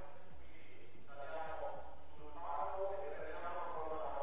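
An announcer's voice over a public-address loudspeaker, faint and thin, speaking from about a second in. A steady low hum runs underneath.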